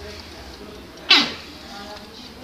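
Mechanical wind-up timer of a Zoppas ZF207 exercise bike ringing its bell once about a second in: a sharp strike that fades within half a second, the end-of-time signal as the timer reaches zero.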